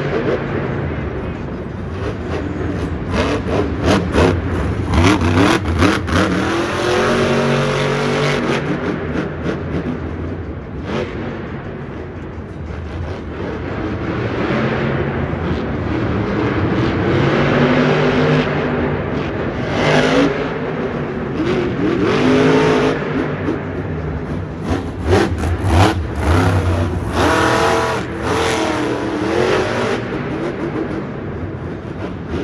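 Monster truck's engine revving hard up and down again and again as the truck drives and jumps, with sharp knocks from time to time over a steady roar of noise.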